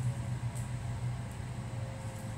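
A steady low mechanical hum, a little softer after about half a second, with one faint tick.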